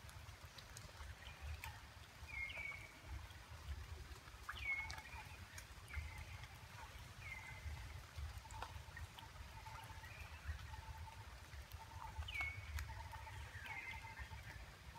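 Faint, short chirping calls from an animal, each sliding down in pitch, repeated every one to two seconds, over a low rumble and a few small clicks.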